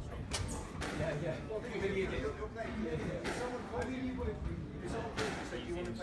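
Indistinct voices talking, with a few sharp knocks scattered through.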